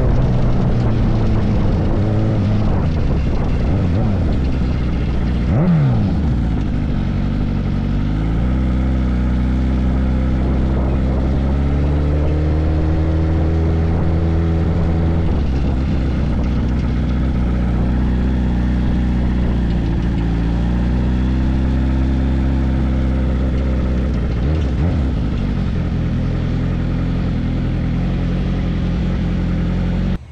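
Kawasaki ZX-10R inline-four motorcycle engine running under way, heard from just behind the bike. The note falls at the start, then holds at low cruising revs with a few steps in pitch as the throttle and gears change. There is a brief rise and fall in pitch about six seconds in.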